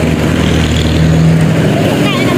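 A road vehicle driving past: a steady engine hum with tyre noise, loudest a little past the middle.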